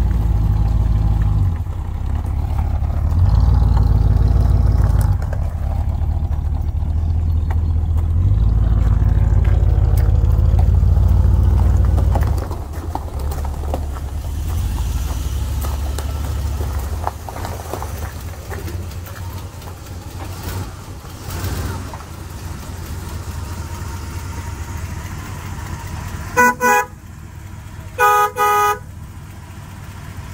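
The motorhome's 440 V8 with a Thermo-Quad carburetor running, its level stepping up and down over the first dozen seconds before settling lower. Near the end the vehicle's horn sounds twice in short blasts about a second and a half apart.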